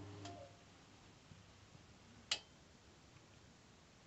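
Ferroli Diva F24 gas boiler in its start-up system check: a low electric motor hum stops about half a second in. About two seconds later comes a single sharp click of a relay on the boiler's control board switching.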